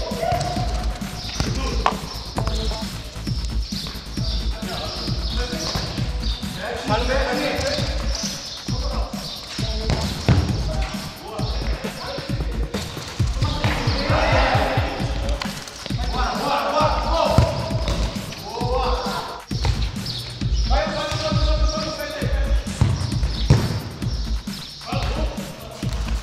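Futsal ball being kicked and bouncing on a concrete court, a run of short thuds.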